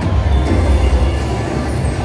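Mayan Mask slot machine playing its game music and effects with a heavy bass as it goes into the free-games bonus; a brighter hissing layer joins about half a second in.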